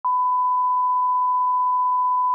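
Steady 1 kHz test tone, the reference tone that goes with SMPTE colour bars: one unbroken beep at a constant level.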